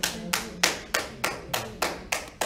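Hand clapping in a steady rhythm, about three claps a second.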